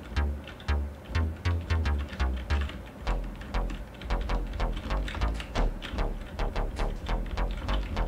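Hard synth bass from the Diversion software synthesizer, an overdriven patch whose filter cutoff is swept by an envelope, played as a run of short punchy notes, about three to four a second. The bass line steps down lower about three seconds in.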